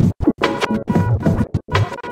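Live record scratching on a turntable played through a Vestax Controller One, sounding as pitched, musical scratch notes. The sound is choppy, chopped off and restarted many times in quick succession.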